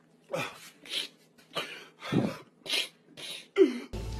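A man crying: a run of short sobbing breaths and sniffs, about seven in four seconds, ending in a short low sob that falls in pitch.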